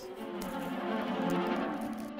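Background music of sustained, slow-moving bowed string notes, with faint rustling of a paper seed packet and a plastic bag.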